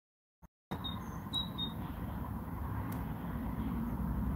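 Dead silence, then from under a second in a steady low background rumble at the workbench, with a few faint clicks and short high beeps.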